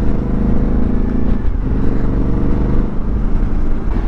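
Suzuki V-Strom V-twin motorcycle engine running steadily under way, its note breaking briefly about a second and a half in.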